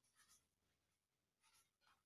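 Near silence, with faint scratches of chalk writing on a blackboard.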